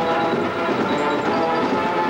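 Marching band playing, its brass holding long chords.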